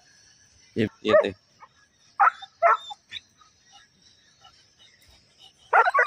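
A young Alsatian (German Shepherd) dog on a leash barking in short, sharp barks: twice a little after two seconds in, then a quick run of barks near the end, as it strains toward cattle.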